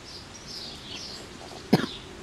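Birds chirping in the background, a few short falling chirps a second. Near the end comes one sudden, loud, short burst.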